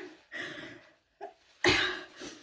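A woman crying, with several short coughs and breathy sobs into a tissue; the loudest cough comes near the end.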